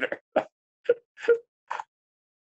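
Laughter in about five short, separate bursts, with silence cut in between them.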